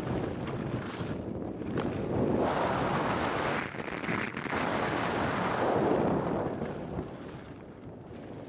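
Wind rushing over the microphone of a camera moving downhill on skis, mixed with skis hissing and scraping over packed snow, swelling and easing in waves and quieter near the end.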